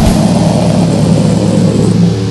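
Heavily distorted electric guitar and bass holding one low chord that rings on steadily once the fast drumming cuts off at the start, at the close of a grindcore song.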